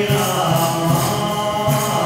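Devotional group chanting of a mantra (kirtan) with musical accompaniment and a steady percussive beat.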